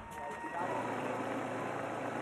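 Faint outdoor race ambience: distant voices over a low steady hum.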